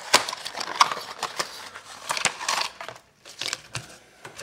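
A cardboard retail box being torn and pulled open by hand: irregular cracking, snapping and crinkling of the cardboard, with a short lull about three seconds in.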